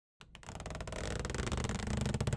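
An animated intro's soundtrack fading in about a fifth of a second in and building steadily louder: a dense run of rapid ticks over a low rumble.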